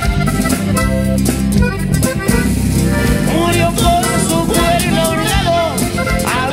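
Norteño band playing a corrido, with a button accordion carrying the melody over strummed guitars, bass and drum kit.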